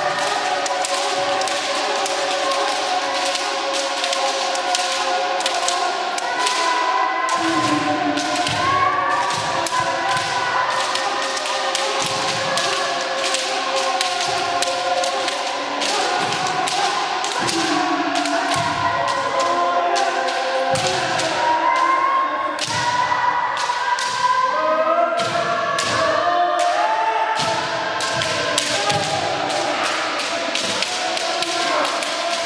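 Kendo practice: bamboo shinai cracking against armour and bare feet stamping on a wooden floor, many sharp hits every second, under the overlapping drawn-out kiai shouts of many players.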